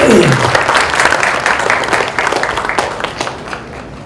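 Audience applauding, many hands clapping at once. It is loudest at the start and tapers off toward the end.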